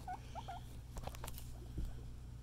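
A guinea pig giving two short squeaks, each dipping then rising in pitch, in the first half-second, followed by faint rustling and clicking in hay and wood-shaving bedding.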